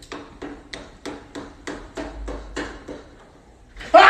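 Hammer-like knocking: a regular run of short taps, about three a second. A sudden loud noise breaks in just before the end.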